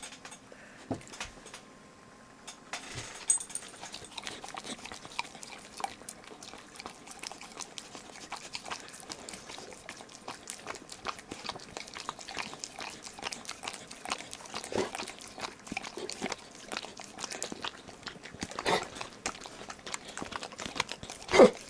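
Pit bull licking and smacking its mouth on sticky peanut butter: a rapid, irregular run of wet clicks and smacks starting about three seconds in, with a few louder ones near the end.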